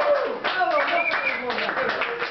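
Audience clapping after a spoken-word piece, a quick patter of many hand claps with voices calling out over it.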